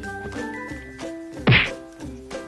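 Light background music, with a single heavy cartoon thud about one and a half seconds in that drops in pitch: an edited-in comic 'turned to stone' sound effect.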